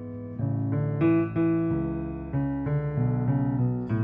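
Piano playing an instrumental passage of chords, a new chord or note struck roughly every third of a second and left to ring.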